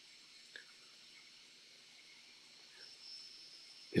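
Quiet room tone: a very faint, soft sound about half a second in, and a faint high steady tone that comes in after about two and a half seconds.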